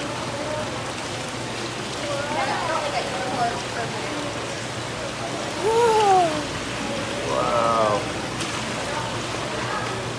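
Water running steadily down a gem-mining sluice flume, with splashing as wooden mesh-bottomed screen boxes of gravel are shaken in it. A few short voice sounds with gliding pitch come through, the loudest about six seconds in.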